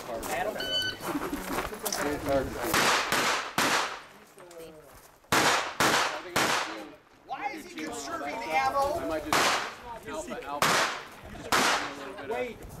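A string of rifle shots fired at an irregular pace, some in quick pairs, each with a short echo.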